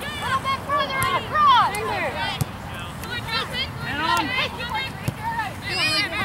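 Soccer players and sideline voices calling and shouting across the field, many short overlapping calls with no clear words, with a few brief knocks.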